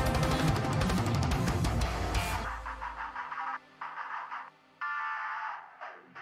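Technical death metal playing: distorted electric guitars over rapid drumming. A little over two seconds in, the drums and full band drop out, leaving a few sparse guitar notes with short silent gaps between them.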